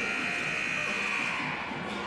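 Arena horn sounding one steady, held high note, fading near the end, over low crowd noise: the signal that the timeout is over.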